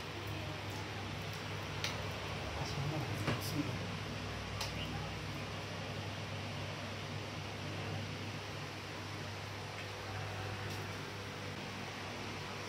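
Quiet room tone: a steady low hum with faint background voices and a few small clicks.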